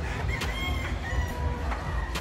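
A rooster crowing once, about a second long, over a steady low rumble.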